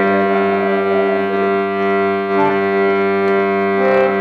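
Harmonium sounding sustained reed notes: a steady chord-like drone held through, with a brief higher note partway in.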